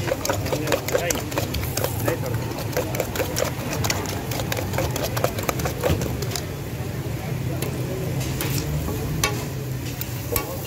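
A metal utensil clicking rapidly against a steel bowl as eggs are beaten with chopped onion, green chili and spices, over a steady low hum.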